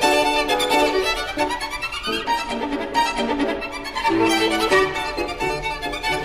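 Solo violin playing a fast virtuoso passage of quick, changing notes high on the instrument, over a lower accompaniment.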